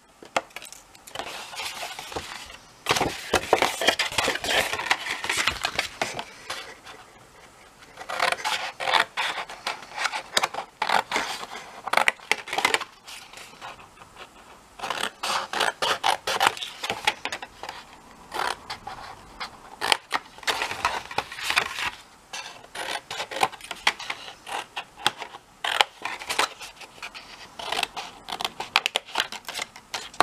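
Scissors snipping through red cardstock, in runs of quick cuts separated by short pauses.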